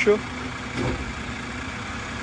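Side-loading garbage truck's engine idling steadily while its automated arm holds a trash cart at the curb, waiting to lift it.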